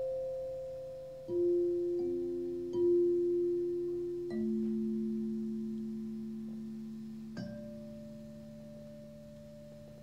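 Tuning forks struck one after another, each ringing as a clear, almost pure tone that sustains and slowly fades under the next. Five strikes: the pitches step downward over the first few seconds, and a higher tone is struck about seven seconds in.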